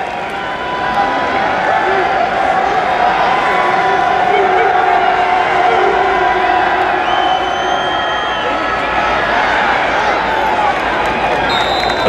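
Stadium crowd noise with cheering, swelling about a second in and holding loud through the play.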